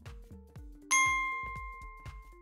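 A single bright, bell-like notification ding about a second in, ringing out and fading over about a second and a half. It is the sound effect of a pop-up subscribe-button animation, heard over quiet background music with a steady beat.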